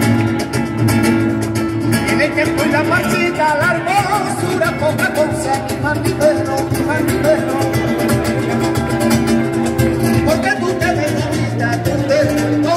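Flamenco music: guitar with a voice singing a wavering, ornamented melody, steady throughout.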